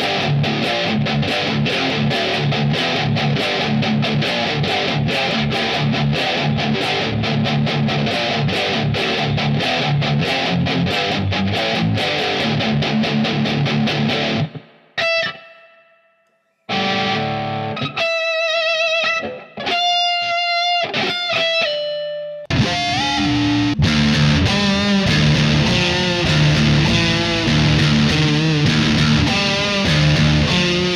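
Harley Benton Stratocaster-style electric guitar played with distortion, likely in drop tuning: a fast, rhythmic low riff of short chopped chords. About halfway it breaks off into a few single ringing notes with vibrato and short pauses. About 22 seconds in, the heavy low riffing starts again.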